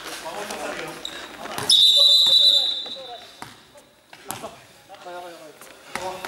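A referee's whistle sounds in one long, steady blast of about a second and a half, starting faint and then sounding out loudly before it fades. A basketball bounces a few times on the hall floor.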